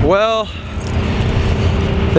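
A man's brief voiced sound in the first half-second, then a steady hiss of outdoor background noise with the rumble of road traffic.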